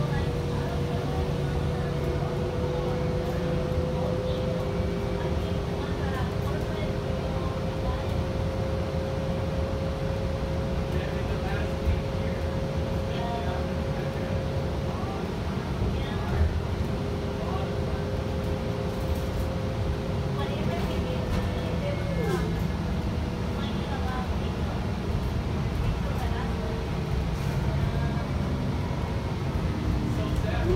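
Interior of a CNG-powered Gillig Low Floor Plus transit bus under way: steady engine and road rumble with a whine in two steady tones that fades out about two-thirds of the way through.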